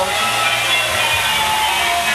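Ringing pitched sound effect from a model-railway sound app, played through a small Bluetooth speaker, its tones shifting pitch a couple of times, over the steady low hum of HO-scale trains running on the layout.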